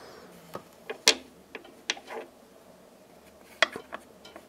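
A string of sharp, irregular metallic clicks and taps, the loudest about a second in and another cluster near the end: a small metal disc being handled and set onto the centre spindle of a Technics SL1200 MK2 turntable.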